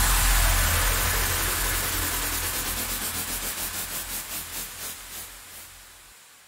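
The fading outro of a rawstyle hardstyle track: a hissing noise wash over a low bass drone dies away steadily, with a pulsing flutter that slows as it fades.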